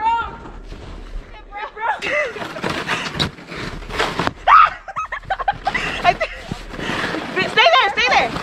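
Red plastic snow sled sliding downhill over snow, a rough scraping noise, with short voiced exclamations from the rider and others over it; the loudest cry comes about halfway through.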